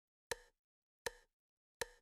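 Three short, hollow percussive ticks, evenly spaced about three quarters of a second apart, each dying away quickly: a steady count-in leading into a song.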